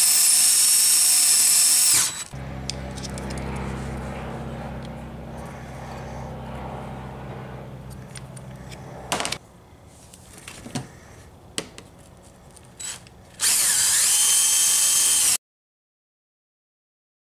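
Cordless drill boring a pin hole through a Delrin screwdriver-handle scale: a loud steady whine for about two seconds, then a quieter lower hum with a few clicks. A second burst of drilling comes near the end and cuts off suddenly.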